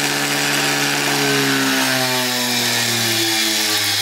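Ex-treadmill DC motor running at full speed on an SCR speed controller, then its hum falling steadily in pitch from about halfway through as the controller's knob is turned down and the motor slows.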